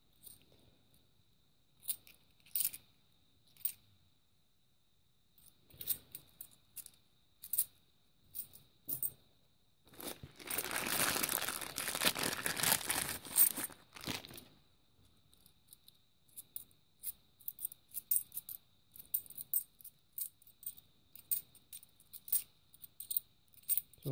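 A few scattered clicks of coins being handled, then a bag of 50p coins torn open for about four seconds, the loudest sound. After it, a quick run of light metallic clicks as the 50p coins knock together in the hands.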